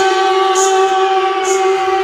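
Trance music in a breakdown: sustained synth chords held without a kick drum, with a soft swish about once a second.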